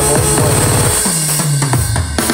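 Yamaha PSR-S975 arranger keyboard playing a loud style accompaniment of drum kit and bass. In the first second the drum strokes crowd into a fast stuttering run, then a held bass note follows. This is the keyboard's Style Retrigger effect, a DJ-like stutter worked from a Live Control knob.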